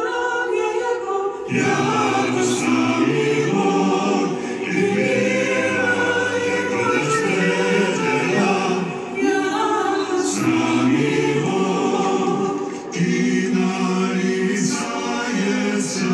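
Orthodox church choir singing a cappella, several voice parts in harmony. The lower voices come in about a second and a half in.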